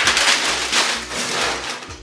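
Packing paper being crumpled by hand, a loud continuous crackling rustle. This is a sheet being crunched up to line the bottom of a box.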